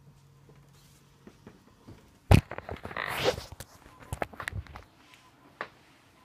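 Handling noise from a phone's microphone. A sharp knock, then about a second of rustling and scraping, a quick run of small clicks, and one last click near the end.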